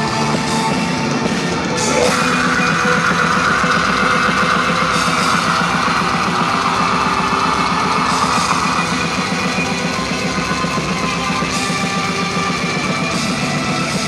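Progressive death metal band playing live: distorted electric guitars, bass and drum kit at full volume. The band gets a little louder about two seconds in.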